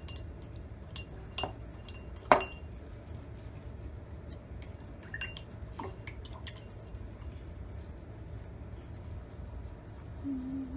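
Paintbrush knocking and clinking against the inside of a glass water jar as it is swirled and rinsed: a handful of light taps, the loudest a little over two seconds in.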